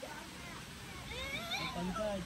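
Steady wind noise through trees, with a faint wavering call about a second in, rising and falling in pitch.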